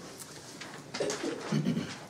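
Quiet room with two soft, low murmured voice sounds, about a second in and again about a second and a half in.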